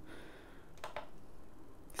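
Quiet room tone with a couple of faint clicks a little under a second in, from a small plastic container of brewing salt being handled.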